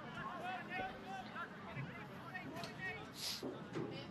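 Faint, overlapping voices from the field and the stands: players calling out and spectators talking at an outdoor soccer match during a stoppage for a free kick.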